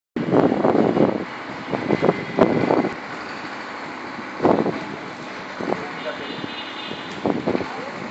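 Short bursts of men's voices, mostly in the first three seconds, over a steady background noise like distant road traffic.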